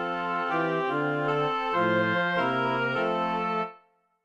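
Roland RP102 digital piano sounding an organ voice: a short run of held chords, each changing within about half a second, that stop cleanly a little before the end.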